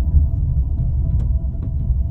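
Steady low rumble of a car driving, heard from inside the cabin, with a few faint ticks in the second second.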